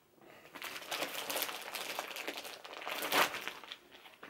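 Crinkling and rustling of baby sleepsuits and their multipack packaging being handled and unfolded, loudest about three seconds in.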